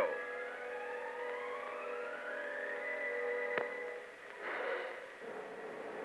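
Film soundtrack effect or music: a siren-like tone that rises steadily for about three seconds and then holds, over several sustained notes. A single click comes about halfway through, and there is a brief swell near the end.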